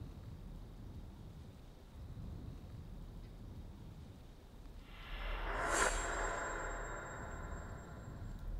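A faint low rumble, then a rush of noise that swells about five seconds in, peaks a second later and fades away.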